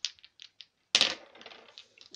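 Dice clicking together in a hand, then rolled onto a wooden tabletop: a sharp clack about a second in, followed by a short rattle as they tumble and settle.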